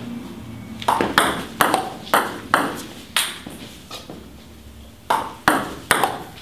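Table tennis ball clicking on the table and the bats in a quick exchange of short touches: about six hits in the first three seconds, a pause, then another run of hits from about five seconds in.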